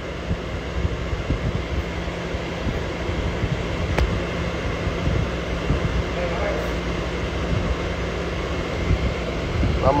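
Car air conditioning blowing steadily inside the cabin, with a constant low hum underneath.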